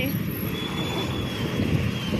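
Street traffic: a steady low rumble of motor vehicle engines.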